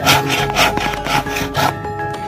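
Wood being sawn by hand, quick rhythmic strokes about four a second, with music underneath.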